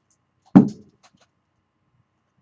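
A single sharp knock about half a second in, dying away quickly.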